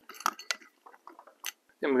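Scattered light metallic clicks and ticks from a Ford distributor's advance mechanism being handled and taken apart by hand. A few sharper clicks stand out, about a quarter, half and one and a half seconds in.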